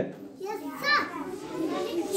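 Young children's voices chattering and calling out over one another, with one child's voice standing out about a second in.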